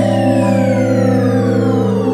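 Intro music: a held synthesizer chord under a tone that slowly falls in pitch.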